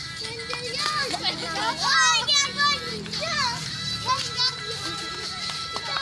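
A group of children shouting and squealing over background music.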